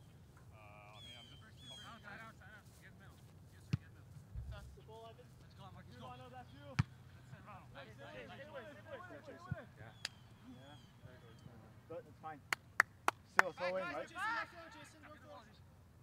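Players' voices calling and shouting across a soccer field, with scattered sharp knocks. The loudest knocks are four in quick succession a little after twelve seconds in, followed by louder shouting.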